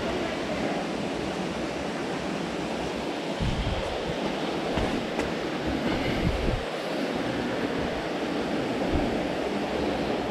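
Steady rushing of a spring-fed cave stream running under and among boulders, with a few low bumps from about three seconds in.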